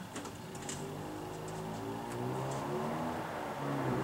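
Electronic keyboard played softly: slow, sustained notes overlapping in the low and middle range.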